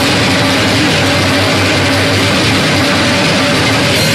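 Loud live band playing noisy, dense rock-jazz, with a drum kit played hard and cymbals washing through a steady wall of sound.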